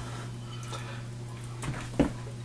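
Faint handling sounds of a wet glass telescope mirror being gripped and lifted out of a bathroom sink, with small clicks and a soft knock near the end, over a steady low hum.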